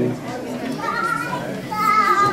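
Crowd chatter and children's voices in a large hall just after a live band's held chord stops, with one high wavering voice about a second in.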